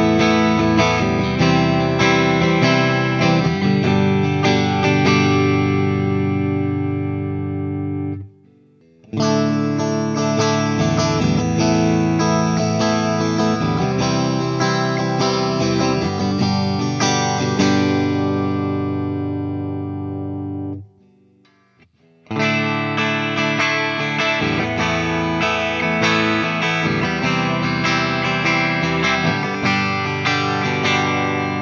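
Ernie Ball Music Man Cutlass electric guitar with three single-coil pickups, played through an amp in three passages. First it plays on the middle pickup, then after a brief silence on the middle and bridge pickups together, then after another brief silence on the bridge pickup alone. Each of the first two passages rings out before its silence.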